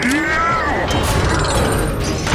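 Film sound effects of a Transformer robot moving: mechanical whirring and ratcheting, with a whine that rises and falls in the first half-second.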